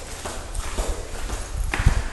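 Footsteps of shoes on a hard tile floor, several steps at a walking pace, with a heavier thump near the end.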